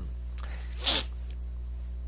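A steady low electrical hum in the microphone line, with one short breath sound from the man at the microphone about a second in.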